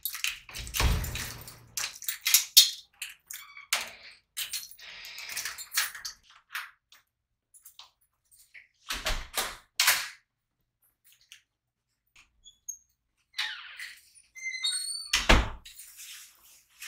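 Keys rattling and clicking in a door knob lock, with a low thud about a second in. A door is then handled with knocks and thunks around the middle and again near the end, with a brief squeak shortly before the last thud.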